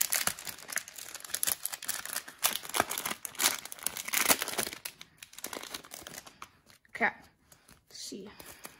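Plastic packaging of a hockey-card pack crinkling and tearing as it is opened by hand, in a rapid run of crackles that thins out after about five seconds.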